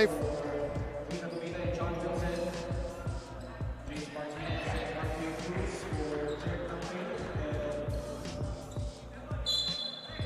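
A basketball bouncing on a hardwood gym court, with voices in the hall behind it. Near the end comes a short, high referee's whistle.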